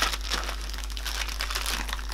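Clear plastic packaging bag crinkling as hands handle it and start to open it.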